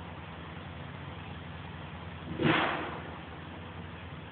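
A single clunk of a piece of firewood landing on a pile about two and a half seconds in, dying away over half a second, over a steady low hum.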